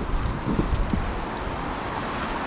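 Wind buffeting the microphone over steady city street noise, with faint distant voices about half a second in.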